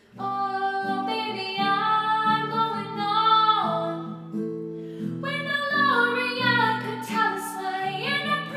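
A woman singing with acoustic guitar accompaniment. Her voice comes in suddenly just after the start, after a quiet moment, and holds long notes.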